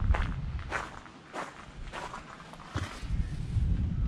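Footsteps on gravel at a walking pace, about one step every two-thirds of a second, over a low rumble on the microphone.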